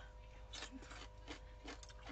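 Faint eating sounds: soft chewing and a few light clicks of wooden chopsticks against a stainless steel bowl, over a faint steady hum.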